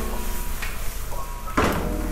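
Metal spatula scraping and knocking against a nonstick wok as fried tofu cubes are tossed and stirred, with one sharp clack about one and a half seconds in.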